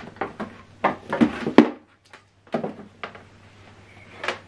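Short knocks and clunks of a flat-screen TV and its cables being handled and shifted on a tabletop, the loudest about one and a half seconds in, with a brief silence near the middle.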